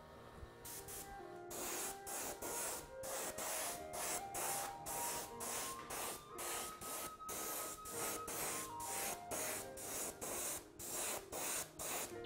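Iwata Eclipse HP-BCS bottom-feed airbrush spraying paint in short, repeated bursts of air hiss, about two to three a second, starting about a second in.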